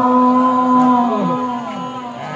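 A male qari's voice through a PA system holding one long note of melodic Quran recitation, which breaks into short wavering downward turns and fades near the end.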